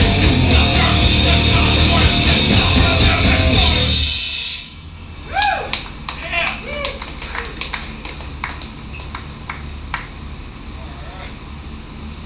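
A live punk rock band with electric guitars, bass and drums playing loudly, stopping about four seconds in. A quieter lull follows, with a few short shouts from the room and scattered clicks and knocks.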